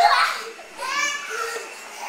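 Young children's high-pitched voices in play: shouts and squeals, in two short bursts, one at the start and another about a second in.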